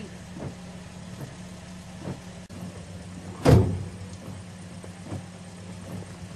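Taxi cab engine idling steadily, heard from inside the cab, with a few faint knocks about once a second and a louder thump about three and a half seconds in.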